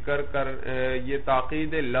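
A man's voice lecturing in a drawn-out, sing-song cadence, with no other sound.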